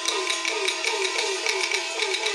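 Chinese opera percussion accompaniment: a gong struck in quick succession, about four or five strokes a second, each stroke sliding down in pitch with a sharp click, over a steady held note.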